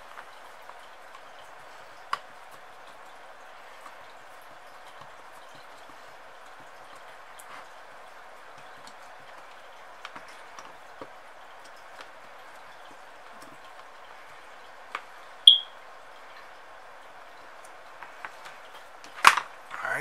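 Small scattered clicks and taps of a hex driver and screws as a carbon fiber quadcopter frame's top plate is screwed onto its standoffs, over a steady background hiss. A short, high ping about three quarters of the way through and a sharp knock just before the end are the loudest sounds.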